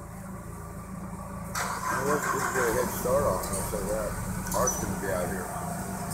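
A steady low mechanical drone. About a second and a half in, a louder running noise joins it, with faint distant voices over it.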